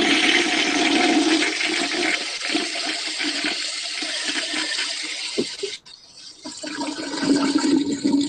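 Toilet flush sound effect: a loud rush of swirling water for about six seconds, breaking off briefly, then a quieter tail of water near the end.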